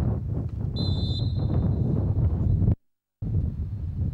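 Wind buffeting the microphone as a steady low rumble, with a short, high referee's whistle blast about a second in. The sound cuts out completely for under half a second near the three-second mark.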